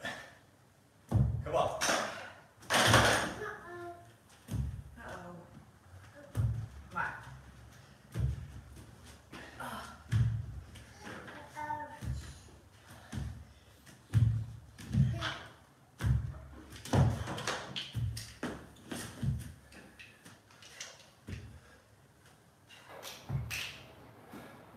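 Dumbbells thudding on a wooden floor at irregular intervals of one to two seconds, as they are set down and picked up between renegade rows and hang clean jerks. Brief voice sounds come in between.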